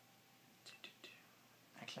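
Near silence: room tone, broken by three faint short clicks around the middle, then a man's voice starts near the end.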